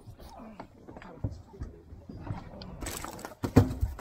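Hooked rockfish splashing at the surface and being lifted aboard a fishing boat, with scattered knocks and a loud thump near the end as it comes over the rail.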